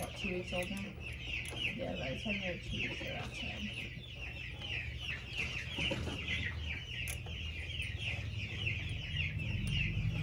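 Baby chicks peeping without pause, a steady stream of short high cheeps that slide downward, about four a second, over a low steady hum.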